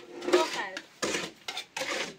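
Food being scooped by hand out of a metal cooking pot onto a plate, heard as three short scraping rustles against the pot.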